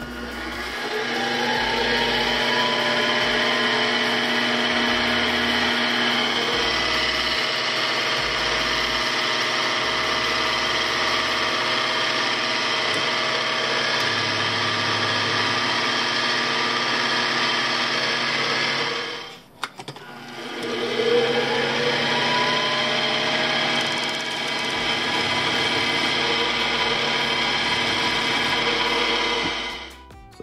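Benchtop mill-drill motor spinning up and running steadily with a whine while a 5/64-inch bit drills through a small brass bushing. The motor stops about two-thirds of the way through, starts and spins up again a second later, and runs until it stops near the end.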